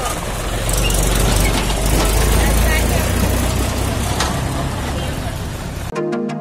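Tractor engine running steadily, louder in the middle of the stretch.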